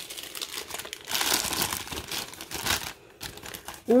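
Plastic food packaging crinkling as it is handled, a dry crackly rustle that stops about three seconds in.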